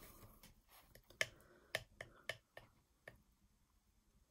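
A metal table knife mixing frosting on a ceramic plate: faint, irregular sharp clicks as the blade taps and scrapes against the plate.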